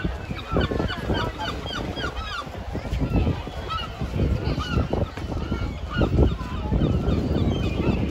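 Gulls calling: a quick run of short, repeated yelping calls in the first couple of seconds, then scattered calls later, over a steady low rumble.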